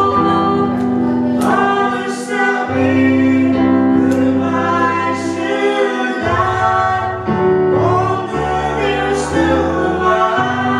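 A choir singing slowly in long held chords that change every second or two, over a steady low accompaniment.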